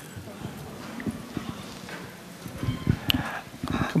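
Handheld wireless microphone being handled and passed, giving irregular low thumps and knocks that come thicker and louder near the end.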